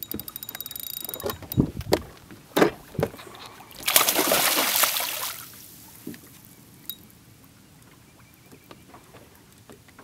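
A spinning reel ticks rapidly for about a second while a hooked bass is played, followed by a few knocks. About four seconds in comes the loudest sound: a splash of just over a second as the bass thrashes at the surface beside the boat.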